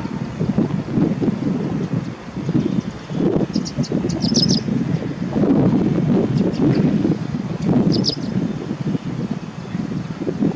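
Wind buffeting the microphone, a steady low rumble throughout. Over it, a small songbird gives two short bursts of quick, high chirps, about three and a half seconds in and again about eight seconds in.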